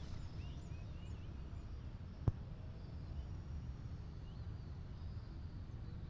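Outdoor ambience of faint small-bird chirps, a few short calls mostly in the first second or so, over a steady low rumble. One sharp click about two seconds in is the loudest sound.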